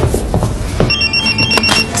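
Mobile phone ringtone for an incoming call: a rapid, high-pitched electronic beeping that starts about a second in.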